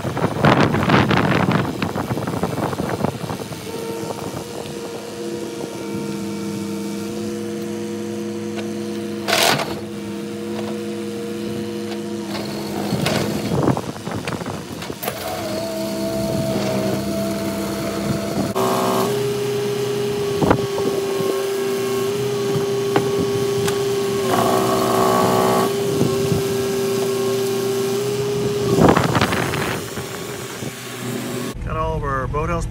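Cat 308 mini excavator running, its engine and hydraulics giving a steady whine that settles onto a single higher tone about two-thirds of the way through. A few sharp knocks sound over it.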